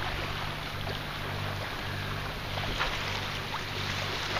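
Sailboat's inboard engine running steadily, a constant low hum, with the hiss of water along the moving hull.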